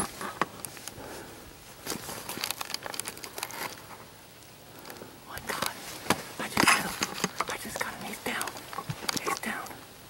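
Close, dry crinkling and rustling in two irregular spells of crackles, mixed with soft whispering.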